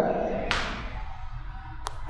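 A pause in a man's speech: low room tone with a short hiss-like burst of noise about half a second in that fades away, and a single faint click near the end.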